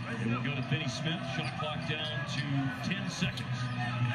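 NBA game broadcast audio: a basketball being dribbled on a hardwood court, with repeated short bounces, under a man's voice talking and a steady arena crowd hum.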